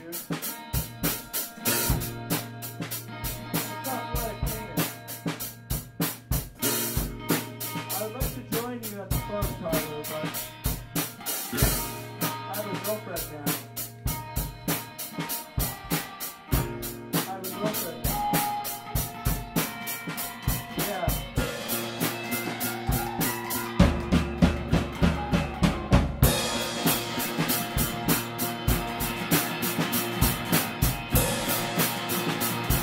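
Improvised band jam: a drum kit keeps a quick steady beat of snare and kick hits under sustained bass and guitar notes. About 24 seconds in a louder low note swells for a couple of seconds.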